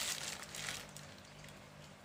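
Brief light rustling of hands handling the motor's lead wires, loudest in the first half second and fading out by about one second.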